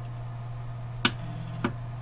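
Two faint short clicks about half a second apart, over a steady low electrical hum.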